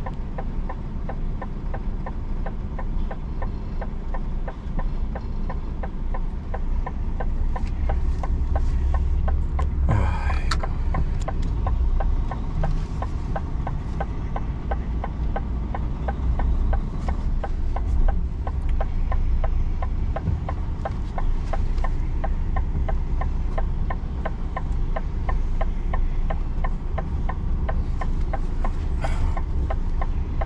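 Heavy truck's diesel engine idling, heard from inside the cab as a steady low hum with a fast, even ticking, while rain falls on the cab. A brief hiss rises about ten seconds in and again near the end.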